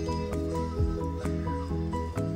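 Background music: steady pitched notes that change every fraction of a second over a light, even beat.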